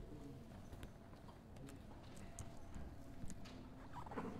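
Faint handling noise: a few light, scattered clicks and taps of small objects being moved near the microphone, over a low room hum.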